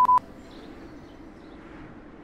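Two quick electronic beeps at one steady pitch, one right after the other at the start, followed by a faint low hiss.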